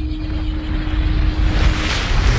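Deep rumbling sound effect for a production-logo title card, growing slowly louder, with a faint steady hum through most of it.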